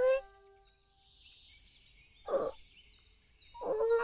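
A young girl's short, hesitant voice: a brief "eh?" at the start, a small sound about two seconds in, and an "uh-huh" near the end. Under it, faint high chirping repeats a few times a second, and a held music note fades out in the first second.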